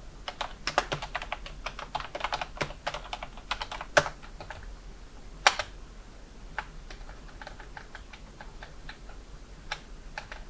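Typing on a computer keyboard: a quick run of keystrokes for the first few seconds, then single key presses spaced apart, with a sharper press about four seconds in and another about five and a half seconds in.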